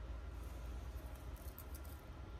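Faint rustling and light clicking of a small beaded purse with a metal frame and chain being handled, over a low steady hum.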